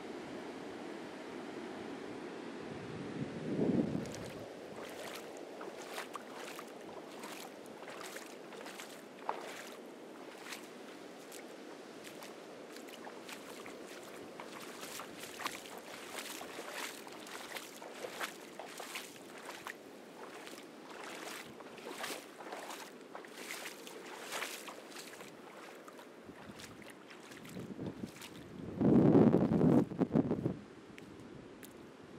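Ocean surf washing on a beach as a steady noisy hiss, with wind buffeting the microphone in two loud low gusts, one about four seconds in and a bigger one near the end. Many small sharp clicks are scattered through the middle.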